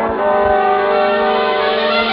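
Orchestral instrumental introduction of a 1950s popular song, with the ensemble holding sustained chords.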